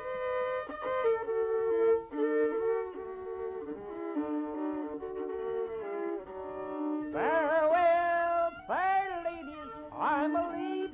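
Archival 1942 field recording of a Texas cowboy song: a fiddle plays a slow stepped melody, then about seven seconds in a man's voice begins singing, sliding up into each phrase.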